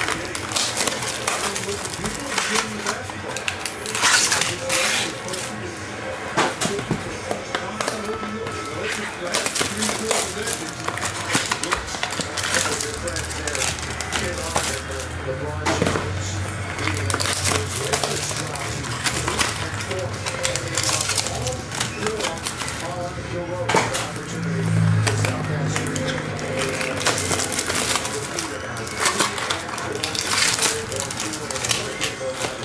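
Cardboard trading-card mini-boxes and foil-wrapped packs being handled and opened, with frequent short crinkles and clicks. Behind them run background voices and music.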